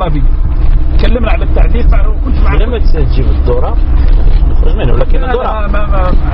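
People talking in conversation over a steady low rumble.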